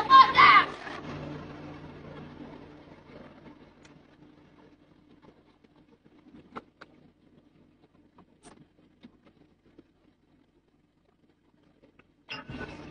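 A truck engine idling with a steady low hum that fades away, with a few light clicks and knocks partway through.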